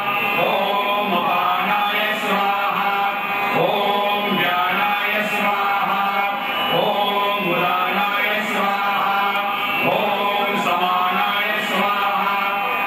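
Devotional Hindu chanting: a mantra-like melody sung in short phrases that rise and fall, over a steady held tone.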